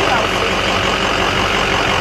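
A vehicle engine idling close by: a steady low rumble.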